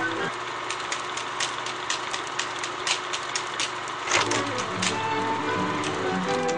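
Film projector running: a steady mechanical whir with a clicking clatter about four times a second. Music comes in over it about four seconds in.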